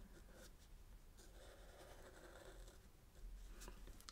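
Faint scratch of a Sharpie marker's felt tip drawn across sketchbook paper as a line is gone over a second time.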